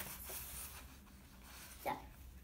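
Soft rustling of paper pages of a picture book being handled and turned.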